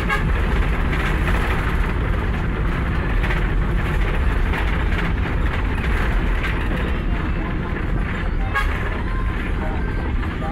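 Steady low rumble of engine and road noise heard inside the cabin of a moving road vehicle.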